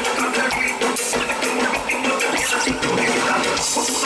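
Live band music played loud and steady over a stage sound system, with the lead singer singing into a handheld microphone.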